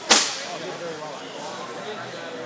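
A single sharp, loud snap just after the start, dying away within a few tenths of a second, over the chatter of a crowded hall.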